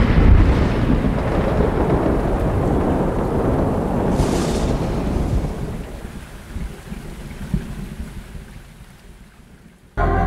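Thunderstorm sound effect: a rumble of thunder over steady rain noise, loudest at the start and fading away over the following nine seconds.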